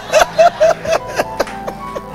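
A man laughing into a handheld microphone, a quick run of short 'ha' pulses about four a second, over steady held background music notes.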